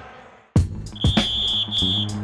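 Sound fades almost to silence, then background music comes in with a sharp hit about half a second in. About a second in, a steady high-pitched whistle blast sounds for about a second, with a brief break near its end.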